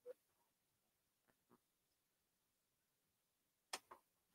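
Near silence, with a few faint, brief clicks: one near the start, two about a second and a half in, and one near the end.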